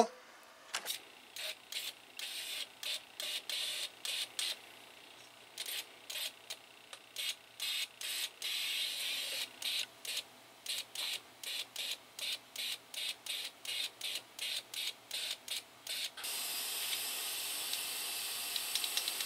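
Toyota 22RE fuel injector on a bench test rig, pulsed so that it sprays into a cup in short hissing bursts about twice a second. Near the end the bursts give way to a steady hiss.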